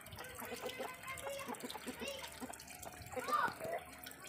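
Faint, broken-up voices of people talking at a distance over steady background noise, with one louder rising-and-falling call a little past three seconds in.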